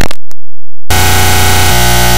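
Heavily distorted, clipped electronic buzz from a glitch-style audio edit. A brief stutter of chopped-up sound is followed by a dropout, then a loud, harsh, steady buzzing drone starts about a second in and shifts slightly in pitch near the end.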